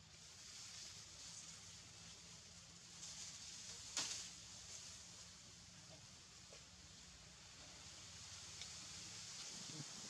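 Faint outdoor ambience: a steady soft high hiss over a low hum, broken by one sharp click about four seconds in.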